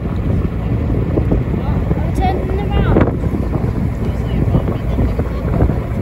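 Wind buffeting the microphone on a boat at sea, a steady rumble, with brief indistinct voices in the background about two to three seconds in.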